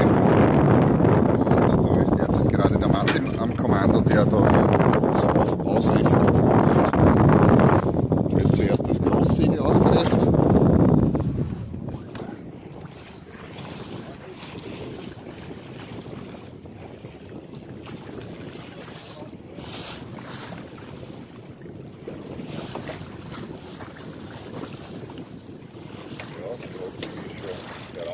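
Wind buffeting the microphone on a sailing yacht under way, loud for about the first eleven seconds. It then drops sharply to a quieter rush of wind and water with a few small clicks.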